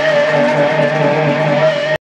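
Live grindcore band's amplified electric guitars holding one steady, slightly wavering high tone over a low sustained note, with no drumming, then cutting off abruptly.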